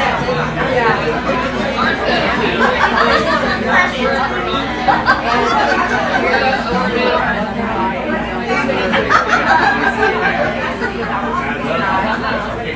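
Several voices talking at once in indistinct, overlapping chatter, with no clear words.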